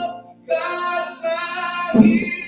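Gospel singing with keyboard accompaniment: a voice holding long, wavering notes, with a brief break just before half a second in.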